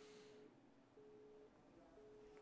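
Faint telephone busy tone over near silence: one steady tone beeping half a second on, half a second off, the pattern of the Italian busy signal.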